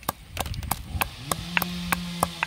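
Pestle pounding in a heavy stone mortar, a quick run of dull strikes at about four a second, crushing spices and aromatics for a curry. A steady low hum joins in partway through.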